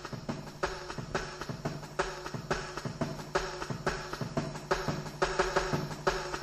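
Mid-1990s jungle track: fast, chopped breakbeat drums hitting several times a second over a steady, held bass note.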